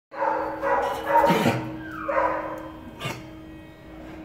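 Excited dog barking and whining, loudest in the first second and a half and trailing off, with one more short bark about three seconds in, over a steady hum.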